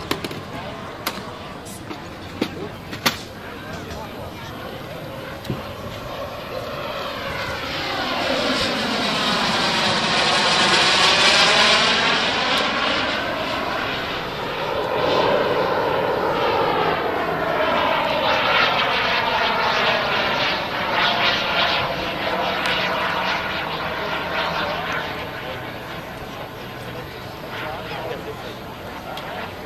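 Kerosene turbine engine of a Viper model jet in flight, a jet roar with the sweeping, phasing tone of a flyby. It swells to a loud pass about ten seconds in, eases, then swells again with a second pass a few seconds later before fading. A few sharp clicks come in the first three seconds.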